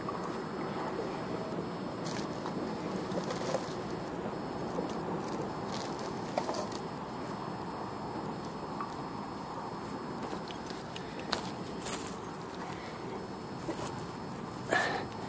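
Footsteps and rustling in dry straw and grass, with a few short knocks as small items are set down, over a steady background noise.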